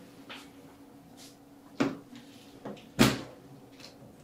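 Doors of a Lablink laboratory incubator being opened: two sharp latch-and-door clacks about a second apart, the second the loudest, with lighter clicks around them, over a steady low hum.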